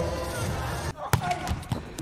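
A volleyball struck hard on a serve: one sharp slap about a second in, followed by a couple of lighter thuds. Before it there is hall ambience with music.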